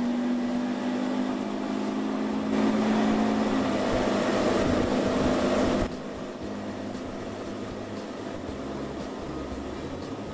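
Evinrude E-Tech 150 two-stroke outboard motor running at speed with the boat up on plane: a steady engine hum with rushing water and wind. About six seconds in, the sound drops suddenly to a quieter, more distant run of the boat.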